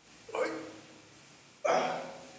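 A man gives two short, voiced exhalations of effort while doing push-ups, one near the start and one near the end.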